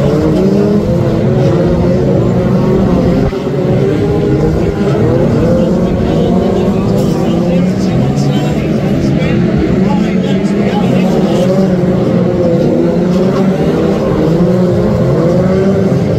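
Several BriSCA F2 stock car engines running together, their pitch rising and falling as the cars rev up and ease off.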